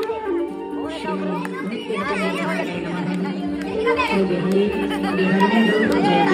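Music playing with a group of young people chattering and calling out over it.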